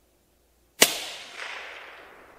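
A single rifle shot about a second in, fired from inside a wooden shooting house, its report fading away over the next second and a half.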